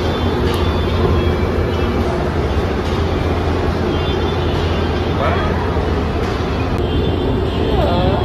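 Escalator running with a steady low mechanical hum and rumble, with faint voices of other people now and then.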